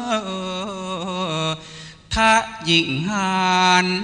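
A male voice singing a Thai sung recitation (kroen) in free rhythm: long held notes, each bent and wavered with ornaments. There is a short break near the middle, after which the voice comes back in strongly.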